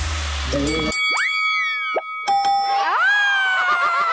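The dance track's beat stops, and cartoon-style game-show sound effects follow: a tone swoops up and slides down about a second in, and another rises near three seconds and slowly falls away, over held electronic tones.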